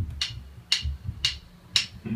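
Drumsticks clicked together four times, about two clicks a second: a drummer's count-in just before the band starts playing.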